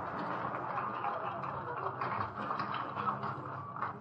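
Audience applauding: a dense, steady patter of many hands clapping, with a low steady hum from the old broadcast recording beneath.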